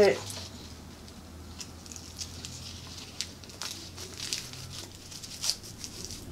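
A roll of hook-and-loop tape being handled and pulled out: scattered light crinkles and ticks throughout.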